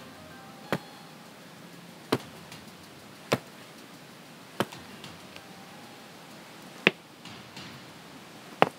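Five sharp taps, spaced a second or more apart, of small doll shoes stepping on a pebbled concrete path.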